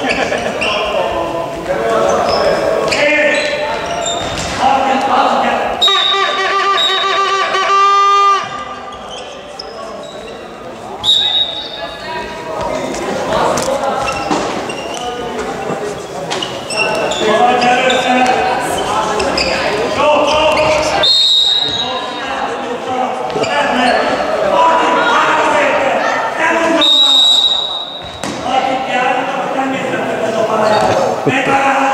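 A handball bouncing on a sports-hall floor during play, under loud shouting from players and spectators, echoing in the large hall. A referee's whistle gives short high blasts about 11, 21 and 27 seconds in. A steady buzzing tone is held for about two seconds near 6 seconds in.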